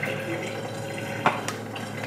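Handling noise on a stone kitchen countertop as a plastic incubator lid is moved and set down: one short knock about a second in and a lighter click just after, over a faint steady hum.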